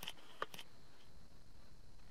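A few soft clicks in the first half second, from the camera being handled as it refocuses, over a faint steady background hiss.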